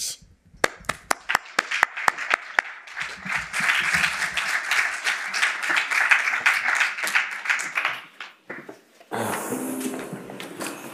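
Audience applause: scattered single claps at first, building into steady clapping for several seconds, then dying away near the end.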